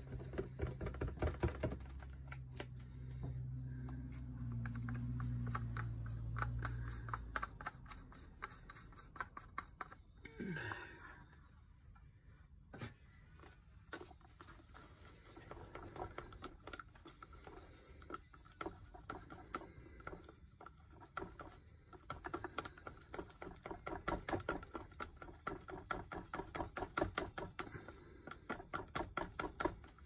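A stick stirring paint in a plastic cup, clicking rapidly against the sides in several quick runs. A low hum runs underneath for the first seven seconds or so.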